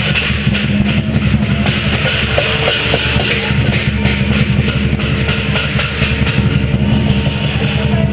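Chinese lion-dance percussion playing loudly and continuously: a drum beaten in a fast, steady rhythm with hand cymbals clashing along.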